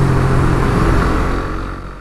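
Suzuki GSX-R150 single-cylinder engine running at a steady road speed, with wind and road noise on the microphone, fading out near the end.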